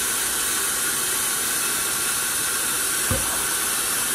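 Kitchen tap running steadily, filling a blender jug with water, with one brief low knock about three seconds in.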